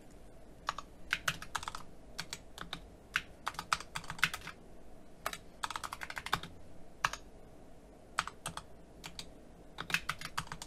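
Typing on a computer keyboard: uneven runs of keystrokes separated by short pauses, starting about a second in.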